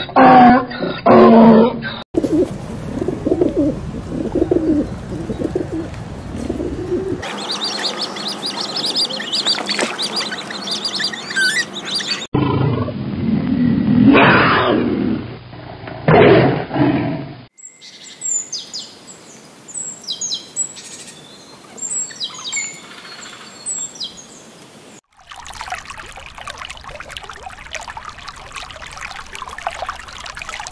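A run of short animal recordings cut together: a donkey braying in loud, repeated heaves at the start, then a low rumbling call, high bird chirping, and a leopard's loud, rasping low call about a third of the way in. More bird calls follow, with quick falling chirps, and a steady hiss fills the last few seconds.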